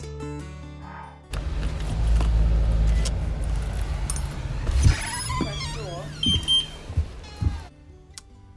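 Rough wind-and-handling rumble on a phone microphone, then a key working a front-door deadbolt with metal clinks and squeaks. After that come a short high double beep and several door thuds.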